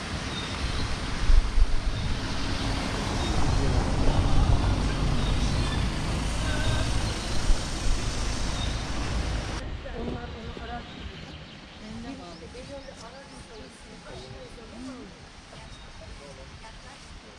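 Outdoor ambience with a loud, low rumble and a few sharp peaks, which stops abruptly about ten seconds in. After that, quieter outdoor ambience with faint distant voices.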